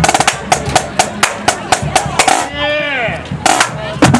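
Marching drumline of snare drums and tenor drums playing a cadence in sharp, evenly spaced strokes. About halfway through the drums break for about a second while a voice calls out, falling in pitch, and the drumming resumes near the end.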